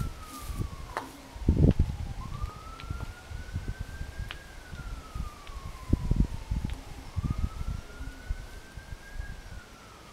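A wailing siren, its pitch sliding slowly up and down about once every five seconds, with a few low rumbles and bumps underneath, the loudest about one and a half seconds in and again about six seconds in.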